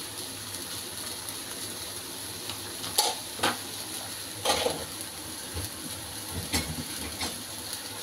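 Metal spatula stirring minced meat in sauce in a wok over a steady sizzle, with a few sharp clinks and scrapes of the spatula against the pan in the second half.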